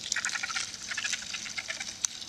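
Leaf-cutter ants amplified through a microphone on the leaf they are working: a dense crackle of fast, high clicks. It holds the ants' high-pitched stridulation chirps, made by rubbing two sections of the abdomen together as a recruitment signal, among the sounds of leaf cutting and ant footsteps.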